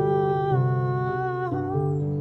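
Lever harp played with low plucked notes while a woman sings a wordless, held melody line over it, changing note about half a second and a second and a half in.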